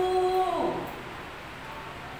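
A woman's voice drawing out one long chanted vowel, held level and then falling away within the first second, as the Hindi vowels are recited aloud while they are written on the chalkboard. Low room sound follows.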